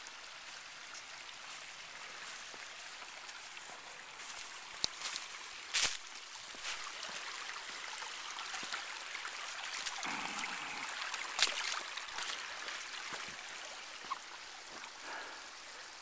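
A small rocky creek running, a steady wash of water, broken by a few brief sharp clicks and rustles near the middle.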